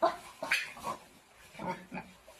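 Pigs squealing and grunting: about five short calls in quick succession.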